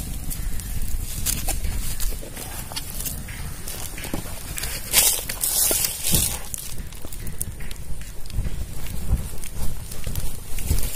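Small open wood fire crackling, with scattered sharp pops and a cluster of them about five seconds in, over a steady low rumble.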